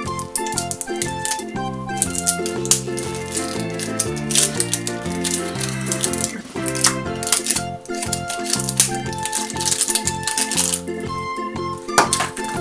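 Background music with a stepping bass line and melody, over which there is dense rattling crinkle, the sound of a small foil-and-plastic toy wrapper being peeled open by hand, heaviest in the middle and again near the end.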